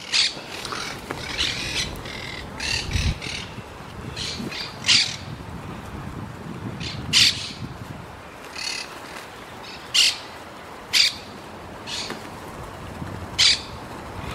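A large flock of feral pigeons pecking and shuffling as it feeds on scattered rice, a steady busy rustle. Over it, short shrill squawks ring out about six times, loudest near the start and about 5, 7, 10, 11 and 13 seconds in, likely from a parakeet among the flock.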